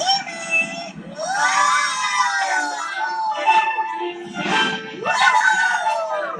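Cartoon children's voices shouting long whoops of joy over upbeat soundtrack music, each cry rising and then falling in pitch, twice.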